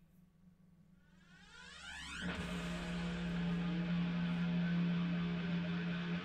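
Background music: a very quiet gap with a rising sweep over the first two seconds, then the music comes back in about two seconds in and plays on steadily.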